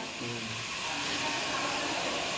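A steady background hiss with no clear source, rising slightly about a second in, with a faint low murmur near the start.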